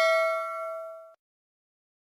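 Notification-bell chime sound effect of a subscribe-button animation, ringing with several clear tones and fading out, cutting off about a second in.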